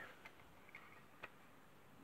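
Near silence with a few faint clicks, the sharpest just over a second in, from the dipstick being handled in the oil filler neck of a stopped small engine.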